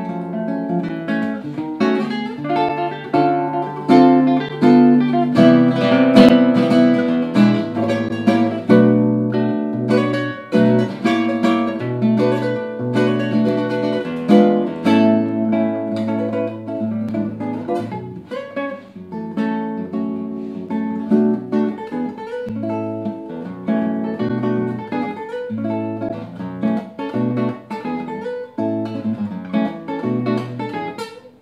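Solo classical guitar with nylon strings, played fingerstyle: a continuous run of plucked melody notes and chords over a moving bass line, with one sharp, loud chord about six seconds in.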